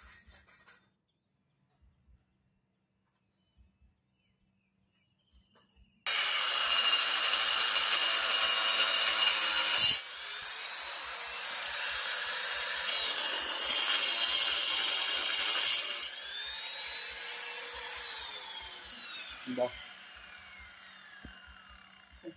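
A handheld electric power cutter cutting a large porcelain floor tile: it starts suddenly about six seconds in and runs with a high whine that shifts in pitch as it works. Near the end it is switched off and winds down with a long falling whine.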